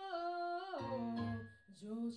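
A woman singing a Japanese ballad to her own Roland FP-4 digital piano accompaniment. She holds a note for under a second, slides down, and carries on with a lower phrase over sustained low piano notes.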